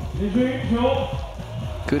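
Arena background sound: a voice over a steady low rumble, with no distinct ball bounces. A male commentator's voice starts near the end.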